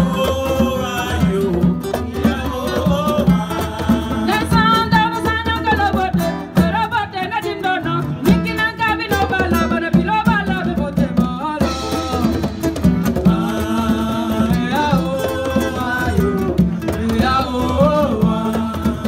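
Live band music: vocals sung over guitar and drums, with a steady beat.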